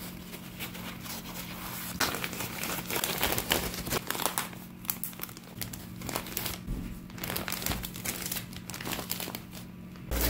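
Paper towels rustling and a plastic zip-top bag crinkling as paper-wrapped tortillas are handled and slid into the bag, in quick irregular crackles that get louder about two seconds in.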